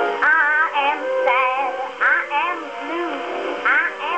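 A 1909 Victor acoustic-era disc record of a ragtime-era song playing through the horn of a Victor talking machine. The music wavers with a strong vibrato, and the old recording has no high treble.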